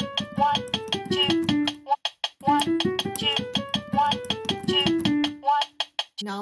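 Piano playing a one-octave D major scale with the right hand, from D4 up to D5 and back down, in quick even notes about five a second. The scale is played twice with a short pause between, and a metronome ticks steadily on each subdivision underneath.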